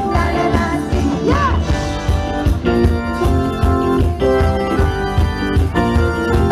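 Live pop band music: an organ-like keyboard over a steady drum beat, with a woman singing into a microphone.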